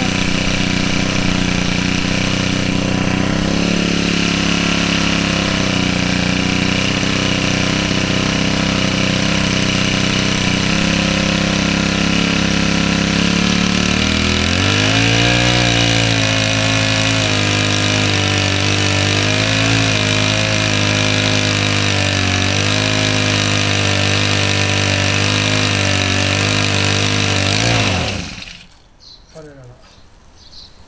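The small engine of a power pest-control sprayer running steadily. About halfway through its note shifts and starts to waver, and a couple of seconds before the end it stalls and cuts out.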